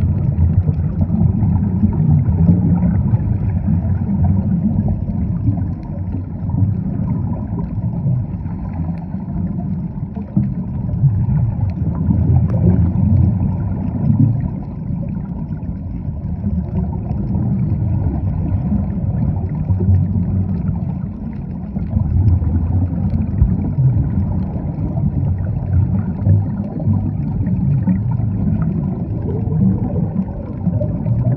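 Underwater ambience: a steady, muffled low rumble and churn of water noise that swells and eases slightly without a break.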